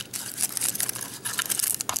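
Plastic shrink wrap crinkling and crackling as fingers pick and peel it off a small plastic toy capsule. The wrap is stubborn and hard to get off, giving irregular crackles with a few sharper clicks.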